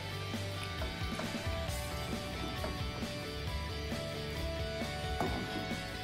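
Background music: a soft, steady instrumental track.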